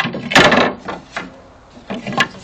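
Wooden boards being handled and shifted against each other: a knock at the start, then a loud scrape of wood sliding on wood about half a second in, followed by a few lighter knocks.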